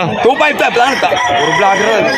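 A rooster crowing among the chatter of a crowd of people.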